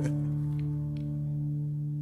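Music: the final strummed guitar chord of a song, held and slowly fading, with its low notes ringing.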